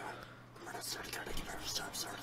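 Faint, quiet speech over a low steady hum, just after loud rap music has cut off.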